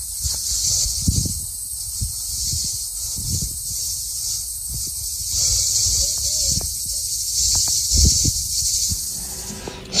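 A steady, high-pitched chorus of insects, swelling and fading in places, with low wind buffeting on the microphone.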